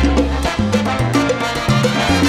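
Live salsa band playing an instrumental passage between sung verses, with a moving bass line and busy hand and drum percussion.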